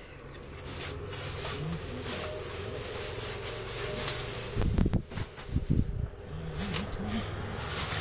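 Low knocks and handling noise as belongings are moved and stacked in a storage unit, with a cluster of knocks about five seconds in, over a steady low hum.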